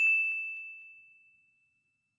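A single high, bright bell-like ding, a notification-bell sound effect, struck once and ringing out, fading away over about a second and a half. A couple of faint clicks follow just after the strike.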